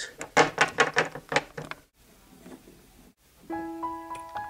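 A quick run of light taps and knocks as a plastic Littlest Pet Shop figurine is hopped along a tabletop. Soft background music with held piano-like notes begins about three and a half seconds in.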